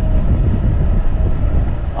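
Wind buffeting the microphone of a body-worn camera on a moving e-bike: a steady low rumble.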